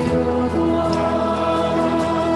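Music: a worship song with voices holding long, steady notes.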